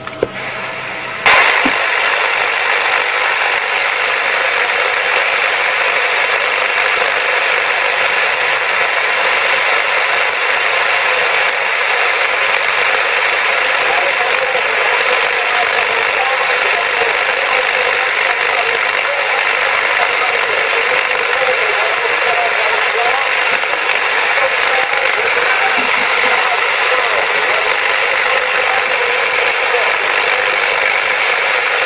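CB radio receiver hiss from the set's speaker while tuned to channel 27, with faint, distant voices buried in the noise. The hiss comes on abruptly with a click about a second in and then holds steady.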